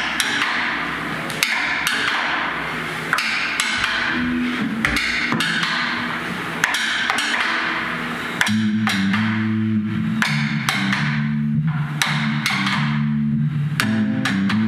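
A live band playing: a drum kit with cymbals and regular hits, joined about eight seconds in by a bass and electric guitar riff that makes the music louder and fuller.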